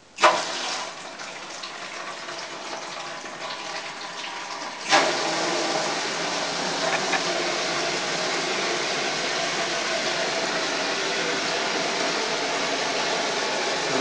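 Water pouring through solenoid valves into a small plastic tank as it fills: a valve snaps open with a click about a quarter second in and water starts running, then a second click about five seconds in and the flow gets louder and runs steady.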